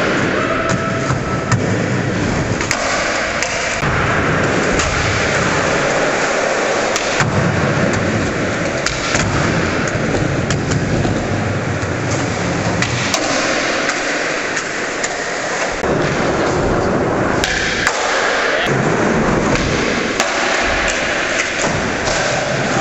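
Skateboard wheels rolling on a concrete floor in an indoor skatepark hall, with scattered clacks of the board popping and landing and the board sliding on a ledge box.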